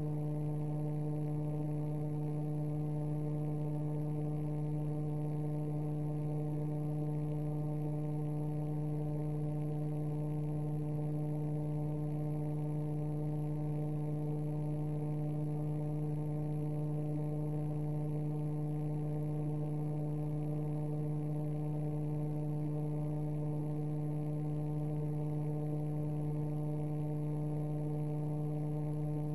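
A steady low electrical-sounding hum with a row of overtones above it, unvarying in pitch and level.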